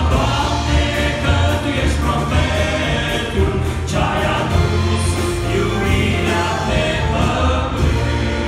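Live Christian gospel song: a male vocal group sings over piano, keyboard and bass guitar, with a strong bass line. It is heard from among the audience in a reverberant church hall.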